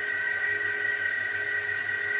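A steady high-pitched whine over a low hum, unchanging throughout.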